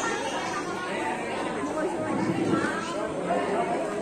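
Indistinct chatter of several voices mingling, with no words standing out.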